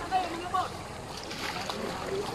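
Faint voices of people talking some way off, over a steady rush of wind and shallow sea water.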